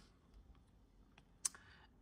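A few faint clicks from computer input at a desk, the sharpest about one and a half seconds in, over near silence.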